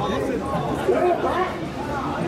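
Many voices of mikoshi bearers chanting and shouting together as they carry the portable shrine, overlapping and unbroken.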